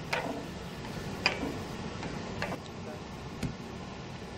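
Etching press being cranked by its large handwheel, the plate and blankets passing under the roller, with faint clicks about once a second from the press mechanism.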